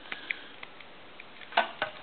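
Faint clicks of telephone keypad buttons being pressed while the keys are tested one after another, with a few sharper clicks near the end.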